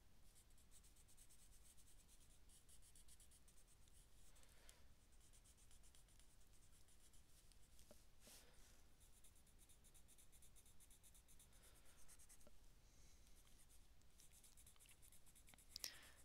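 Faint, steady scratching of a Derwent Inktense pencil used dry, coloring on a sketchbook page with short repeated strokes.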